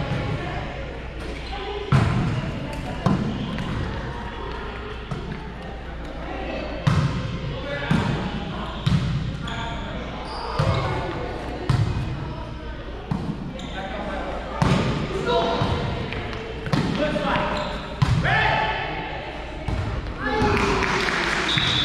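Indoor volleyball rally: sharp hits of hands and forearms on the volleyball, one every second or two, echoing in a large gym hall.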